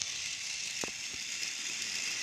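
Battery-powered toy Thomas the Tank Engine running along its toy track, its small motor and gears giving a steady high whir. Two brief clicks come just under a second in.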